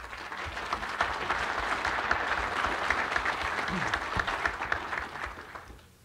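Audience applauding, building up within the first second and dying away near the end.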